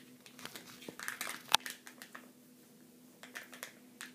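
Crinkling and crackling of a Kinder Joy egg's wrapper being peeled open by hand, in scattered bursts, with one sharp click about one and a half seconds in.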